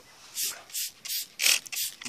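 Trigger spray bottle of Mothers foaming wheel and tire cleaner squirted at a tire and rim: about five quick hissing sprays, roughly a third of a second apart.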